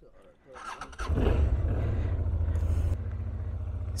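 2005 Honda Transalp 650's V-twin engine starting about a second in, running a little higher at first, then settling into a steady, evenly pulsing idle about a second before the end.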